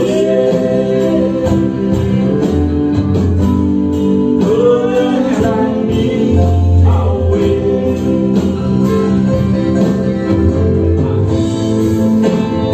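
Live band playing a slow ballad on bass guitar, drum kit, keyboard and guitar, with a lead line whose notes bend up and down.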